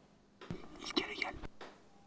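A brief hushed, whispered voice, lasting about a second in the middle, over quiet room tone.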